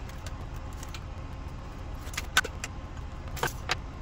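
Sharp plastic clicks and light clatter as the battery cover of a wireless thermometer's outdoor sensor is pried off and the batteries are taken out onto a wooden table: one click near the start, then two small clusters of clicks in the second half, over a steady low hum.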